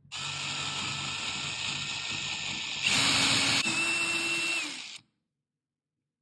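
Power drill running with a twist bit, boring a hole into a softwood beam; it gets louder about three seconds in, its pitch steps up a little just after, and it stops suddenly about five seconds in.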